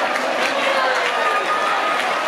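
A packed crowd's many voices talking and calling out over one another, steady and loud, with no music playing.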